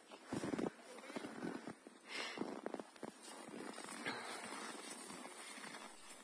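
Faint, indistinct children's voices with a few soft scattered sounds, no clear words.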